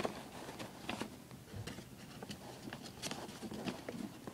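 Construction paper being folded and creased by hand, rustling with irregular soft crackles.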